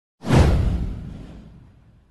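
A whoosh sound effect with a deep low boom under it, swelling in suddenly about a quarter of a second in and fading away over about a second and a half.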